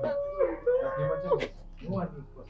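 A woman wailing in grief, two long held cries in the first second and a half.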